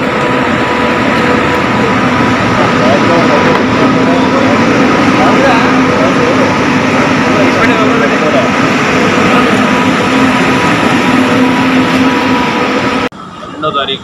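Loud, steady background din with a constant hum and indistinct voices underneath, cutting off suddenly about a second before the end.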